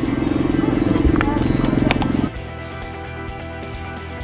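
Motorcycle engine idling with a rapid, even pulse for about two seconds, then cutting off abruptly. Background music plays throughout.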